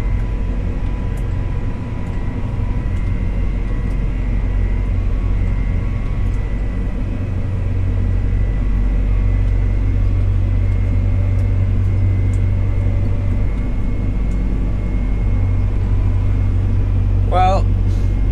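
Fendt 724 tractor's six-cylinder diesel engine and drivetrain running steadily at road speed, heard from inside the cab as an even low drone with a faint steady high whine.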